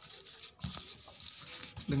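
A hand rubbing and shifting over a paper book page and an audio CD, making light scratchy rustling with small clicks.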